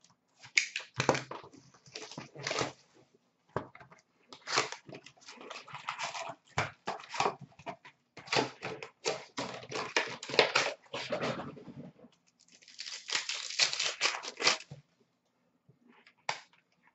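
Hockey card pack wrappers being torn open and crinkled by hand, in a string of short crackling rips, with a longer stretch of crinkling about three quarters of the way through.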